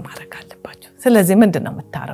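A woman speaking in Amharic, in two short phrases, over soft background music with long held notes.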